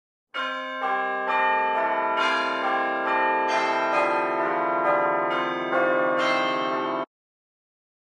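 A run of chiming bell notes at changing pitches, struck about twice a second and ringing on over one another, cut off suddenly about seven seconds in.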